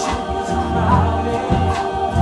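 Musical-theatre number: an ensemble singing together over instrumental accompaniment, with a recurring low bass pulse.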